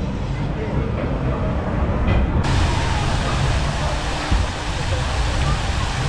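Outdoor ambience: faint, indistinct voices over a steady low rumbling noise, with the hiss growing fuller about two and a half seconds in.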